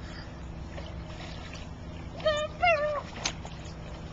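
A young child's voice giving two short, high-pitched squeals a little past halfway through, over a steady low hum.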